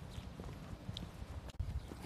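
Low, irregular thumps and rumble of movement on a phone's microphone as it is carried outdoors, with a brief faint high tone about a second in and a sharp click a little after the middle.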